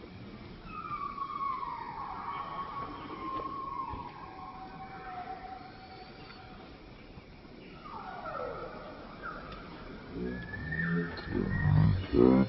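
Macaque calling: a long cry that slides slowly down in pitch over several seconds, then a second, shorter cry falling steeply about eight seconds in.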